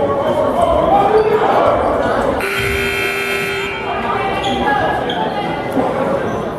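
Gym scoreboard buzzer sounding once, a steady tone lasting just over a second about two and a half seconds in, calling the teams back from their benches onto the court. Crowd chatter echoes in the gym throughout.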